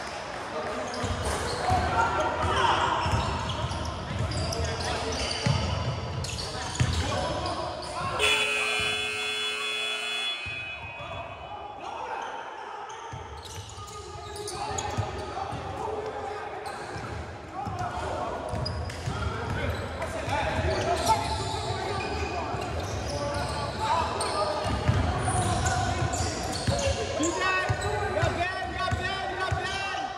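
Indoor basketball game echoing in a large gym: a ball bouncing on the hardwood, players' feet on the court, and indistinct voices calling out. About eight seconds in, a steady tone sounds for about two seconds.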